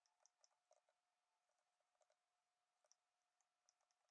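Near silence, with faint scattered clicks.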